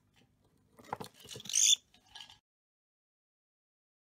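Cockatiel pecking at a small treasure-chest box with a few sharp knocks, then giving a short, loud, high chirp about one and a half seconds in and a softer call just after.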